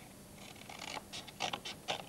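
Scissors cutting a paper tube: a faint rustle of paper, then a run of quick, crisp snips in the second second.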